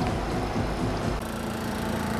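Antique Westinghouse vending-machine refrigeration compressor running steadily in its cooling cycle. About a second in, the sound cuts to a different steady hum.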